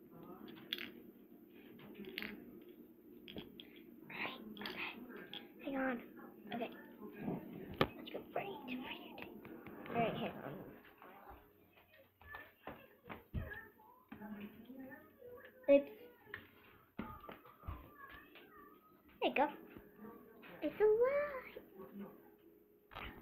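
A child's indistinct voice in a small room, mixed with rustling and knocks from a handheld toy camera being moved and swung on its string, with one loud knock about two-thirds of the way through and a steady low hum underneath.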